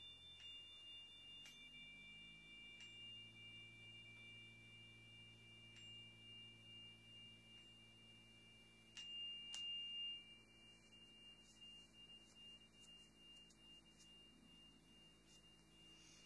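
A metal chime struck with a wooden mallet gives a faint, high, long-held ringing tone that slowly dies away. It is struck again about nine seconds in and rings briefly louder.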